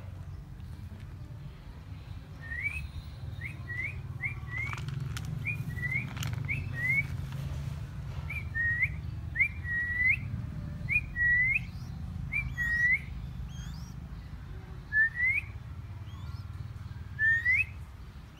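Young crested goshawk giving short, rising whistled calls, repeated many times in quick runs of two or three with pauses between.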